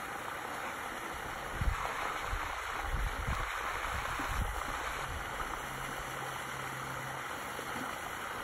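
Water sloshing and gurgling as a clear plastic aquarium tank is tipped and shaken in the shallows of a pond to push a fish out, over a steady hiss of water. A run of low thumps comes in the first half.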